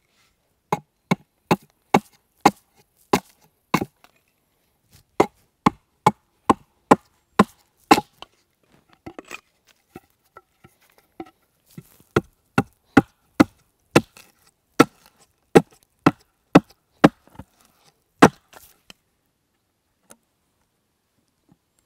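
Small axe hewing a wooden stake braced on a stump: sharp chopping strikes about two a second, in three runs with a short lull around the middle.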